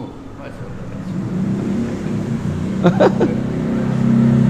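A low engine hum, steady in pitch, growing louder over the first two seconds and then holding. A brief voice sound comes about three seconds in.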